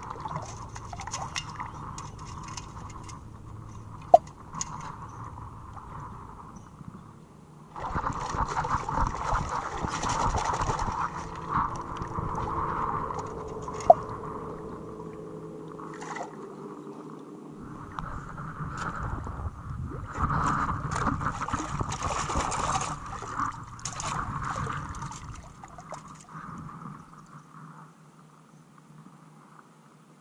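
Lake water sloshing and splashing as a perforated metal sand scoop is dug and shaken in shallow water, with wading, louder in two stretches. Two short sharp blips stand out, one a few seconds in and one about halfway through.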